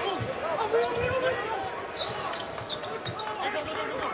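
On-court basketball game sound: a ball bouncing on a hardwood floor, sneakers squeaking in short chirps, and players' voices calling out.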